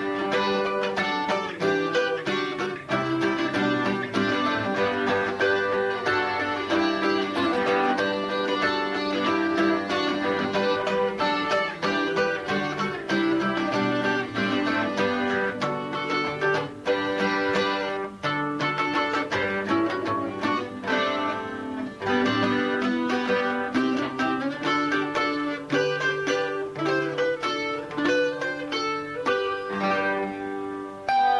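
Double-neck acoustic guitar played solo: an instrumental English country dance tune, a steady run of quick plucked notes over a moving bass line.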